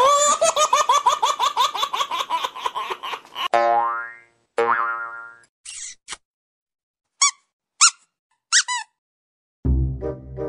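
Cartoon sound effects: a fast wobbling boing for about three and a half seconds, then two ringing tones that fall and fade, then a few short high squeaks spaced apart. Music comes in near the end.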